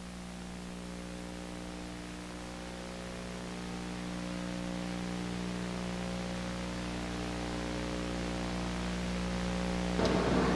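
Steady hiss with a buzzing electrical mains hum and its overtones, slowly getting louder: background noise of an old broadcast or videotape recording with no other sound over it.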